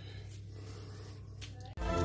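Quiet, low steady hum with faint soft strokes of a silicone pastry brush spreading egg wash over braided dough, about once a second. Background music with a beat comes in loudly near the end.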